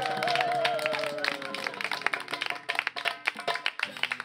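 A song played on hand drums ends, with voices holding a last note and trailing off over the first two seconds. A group claps and applauds through the second half.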